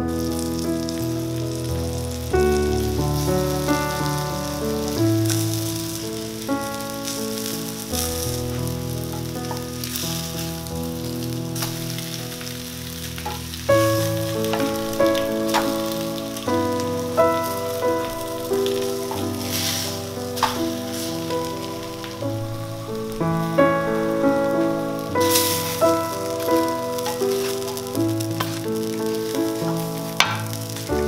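Black bean and chicken patties sizzling as they fry in oil in a skillet, with occasional clicks. Background music with a melody plays over it.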